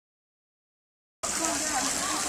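Silent at first, then from about a second in a steady hiss of water spilling over the stepped edge of a koi pond, with faint voices in the background.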